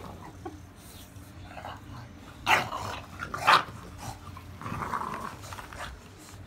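English bulldogs play-fighting, with growling noises: two short loud ones a little past halfway and a longer, quieter one near the end.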